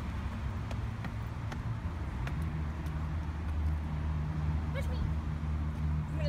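Steady low rumble of street traffic, with a few faint taps and a short high voice near the end.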